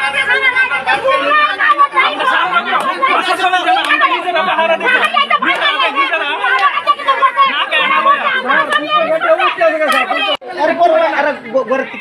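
Several men talking over one another in a crowd, overlapping chatter with no one voice clear. It breaks off briefly about ten seconds in, then picks up again.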